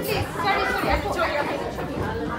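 Indistinct chatter: several people talking in a large hall, none of it clear speech.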